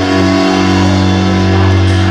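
Live band playing an instrumental passage, electric guitar and backing instruments holding a steady chord.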